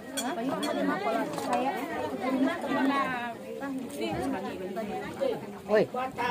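Women's voices talking over one another in lively chatter, with a short lull in the middle.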